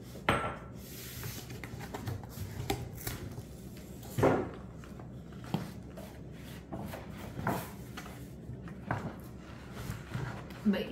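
Cardboard shipping box and a stiff inner box being opened and handled: flaps and lid shifted and lifted, with rustling and several sharp knocks against the counter. A ceramic mug is set down on the stone counter right at the start, with a short clink.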